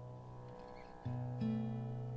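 Plucked string instrument being tuned up: a low note rings and fades, is plucked again about a second in, and a second string joins shortly after, both left to ring.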